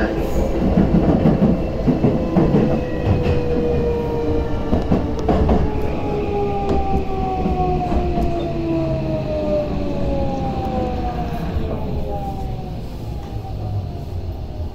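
Electric commuter train at a station platform: a rumble of wheels on rail with scattered clacks, and motor whine tones that glide steadily down in pitch over several seconds as the train slows, the sound fading toward the end.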